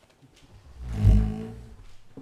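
A microphone on a gooseneck desk stand being handled and pushed aside, giving a heavy low thump and rumble that swells to a peak about a second in and then fades.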